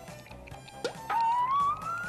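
Quiet background music, then about a second in a single clear whistle-like tone that slides slowly upward for about a second and a half, a comic rising sound effect.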